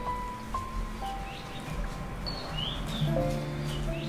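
Soft drama background score of long held notes that move to a new pitch every second or so, with a few faint bird chirps over it.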